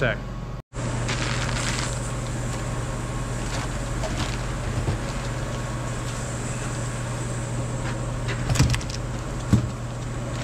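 Steady low mechanical hum of workshop background noise, with a couple of short knocks near the end as a cardboard box is handled on the bench.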